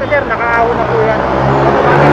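An engine running with a steady low drone that comes up about a second in and grows louder, under faint voices.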